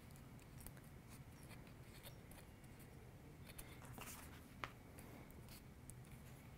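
Near silence with faint rustling and small clicks of a folded strip of cardstock being rolled tightly between the fingers, with one sharper tick late on.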